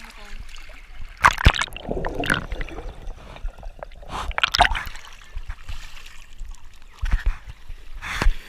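Swimming pool water splashing and sloshing around the microphone as it goes under the surface and comes back out, with muffled underwater gurgling in between. Loud splashes come about a second in and again about four and a half seconds in.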